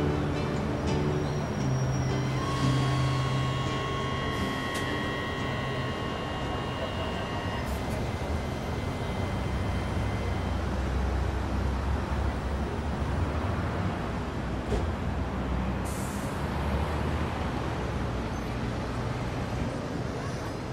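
Steady rumble of a metro train and city street traffic, with music fading out in the first few seconds.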